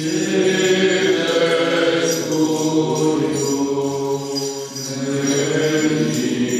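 Men's voices chanting a Byzantine-rite liturgical hymn together in long held notes, with a short break between phrases about five seconds in.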